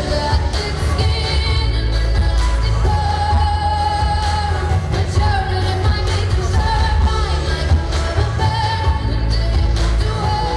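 A pop song: a singing voice over a band backing with heavy bass.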